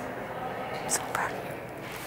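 Faint whispering over low room noise, with a couple of brief soft sounds about a second in.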